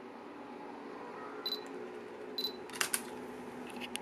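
Canon EOS M5 with an EF-M 22mm lens: two short, high focus-confirmation beeps about a second apart as autofocus locks, then the shutter fires with two quick sharp clicks, followed by lighter clicks near the end.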